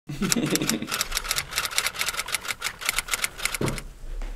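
A man laughing, with a run of rapid, evenly spaced clicks, about eight a second, through most of it.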